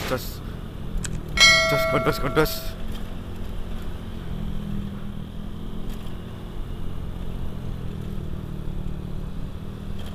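Motorcycle engine running with road and wind noise while riding. About a second and a half in, a loud ringing tone with several steady pitches starts suddenly and lasts about a second.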